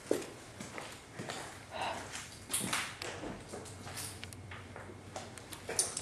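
Irregular footsteps, knocks and clicks, with handling noise from a handheld camera being moved around.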